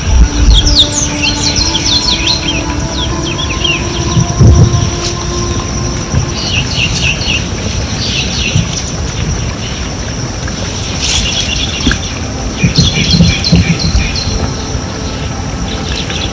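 Birds chirping in three bursts of quick calls, over a constant high-pitched whine and a low rumble, with soft background music.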